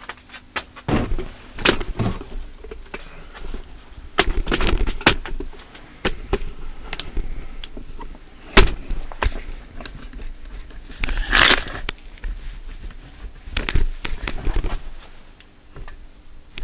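Irregular knocks, clicks and rattles of things being handled, with a short hiss about eleven seconds in.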